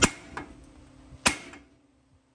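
Two hard hammer blows of steel on the steering knuckle of a 2003 Ford F-150, about a second and a quarter apart, each ringing briefly. The knuckle is being struck to shock loose the tapered stud of the worn upper ball joint.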